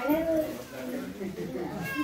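Newborn baby fussing with short, thin cries, a meow-like call rising and falling near the start, under women's voices.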